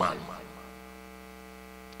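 Steady electrical mains hum with a buzzy row of even overtones, left standing once the voice fades out about half a second in.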